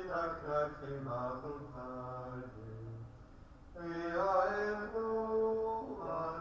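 Slow liturgical chant of a litany of invocations, sung in long held notes. A lower phrase is followed, about four seconds in, by a second phrase at a higher pitch.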